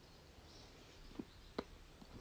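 Near silence, with two faint clicks a little after a second in: a metal spoon knocking against the bowl while stirring henna paste.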